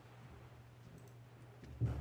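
A quiet room with a steady low electrical hum, a few faint clicks, and a single dull thump near the end as something is knocked or set down at the altar.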